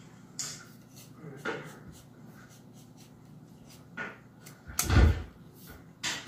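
Clicks and knocks of a Minelab Equinox 800 metal detector's shaft sections being handled and slid together, with one heavy thump about five seconds in.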